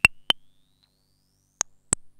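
1978 Serge Paperface modular synthesizer playing short pitched pings, two near the start and two near the end, joined by a faint thin tone that glides steadily upward; each ping is higher than the last, rising with the glide as a frequency knob is turned.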